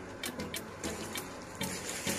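Rustling and handling noise of a handbag being picked up and moved, growing about a second in, over background music with a steady beat.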